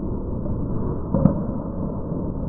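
Candlepin bowling alley din: a steady, dull low rumble of play on the lanes, with one sharp knock a little over a second in. It sounds muffled, with no treble at all.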